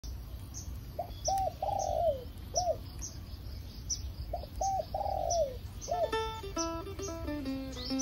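A bird calls in two cooing phrases, each a few short notes and a longer falling one, over faint high chirps repeating about twice a second. Plucked guitar music begins about six seconds in.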